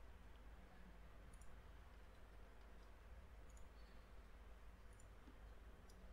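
Near silence: a faint low room hum with a few faint clicks of a computer mouse, spread a second or two apart.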